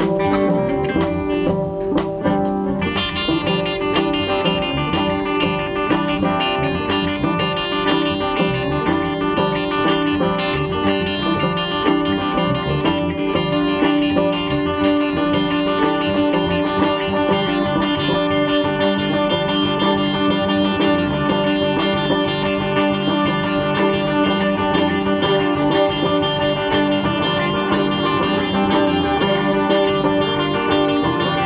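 Live blues band playing an instrumental passage: electric guitar and other plucked strings, with bowed fiddle lines, in a steady, busy rhythm.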